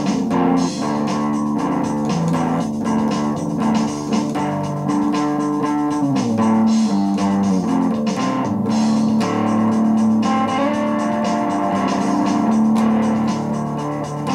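Instrumental blues-rock played on an amplified electric guitar, with held low notes and a falling slide about six seconds in, over a steady drum-machine beat.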